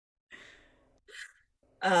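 Two soft breaths from a woman, a sigh-like breath out and then a short intake of breath, with speech starting near the end.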